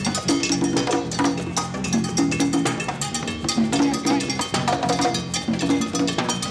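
Live Latin percussion jam: timbales and a mounted cowbell struck with sticks over congas played by hand, in a fast, steady rhythm of dense strokes with repeating pitched drum tones.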